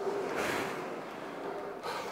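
A man breathing hard while rowing on an indoor rowing machine: a long breath about half a second in and a shorter, sharper one near the end.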